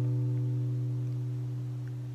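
Acoustic guitar notes of a B minor arpeggio, with the B bass note on the fifth string's second fret, ringing on and slowly fading after being plucked.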